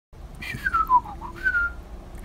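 A person whistling a short tune: a quick falling run of notes, then a held higher note about halfway through.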